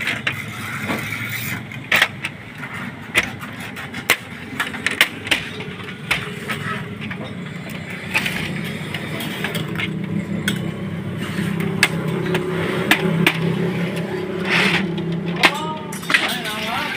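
Repeated sharp plastic clicks and knocks from an HP LaserJet Pro 400 printer's top cover and output bin being handled, over a low hum that grows steadier in the second half.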